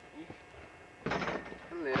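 A basketball coming down from a shot that fell short: one sudden impact noise about a second in, followed by a boy's voice near the end.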